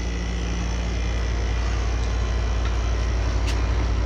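Room air conditioner running: a steady low hum under an even hiss.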